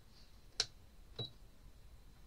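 Two sharp clicks about half a second apart on a new sewing machine that is switched on but not stitching, the second with a brief high tone. These are its controls being pressed.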